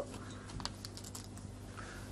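Faint, scattered light clicks over a steady low hum.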